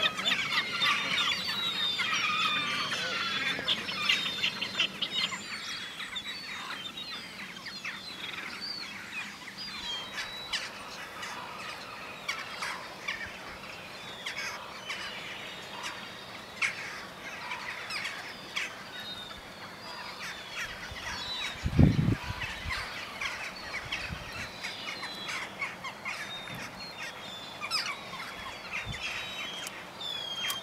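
Many birds calling: a dense chorus of overlapping calls for the first few seconds, thinning to scattered calls after that. A single dull, low thump about twenty-two seconds in.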